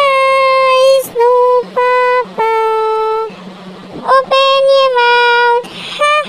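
A high child's singing voice holding long, steady notes of a nursery-rhyme tune, about five notes broken by short pauses.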